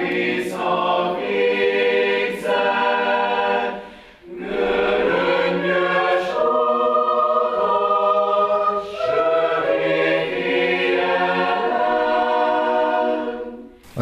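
Mixed chamber choir of women's and men's voices singing sustained chords, with a brief break about four seconds in.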